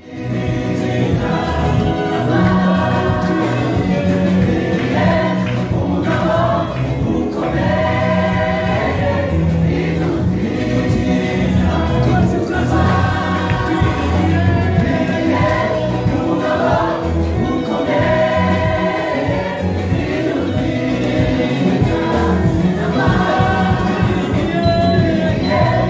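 Gospel vocal group singing together, lead and backing voices, over a live band of keyboard, drums and electric guitar with a steady beat.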